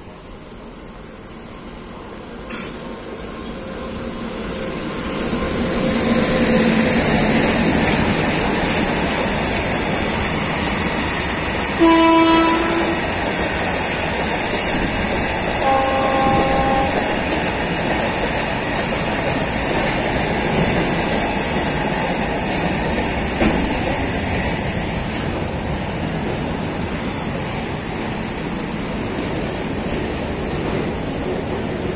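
A freight train running past on the tracks, its rumble and wheel noise building over the first few seconds and then holding steady. A short train horn blast sounds about twelve seconds in, and a second, higher-pitched one about four seconds later.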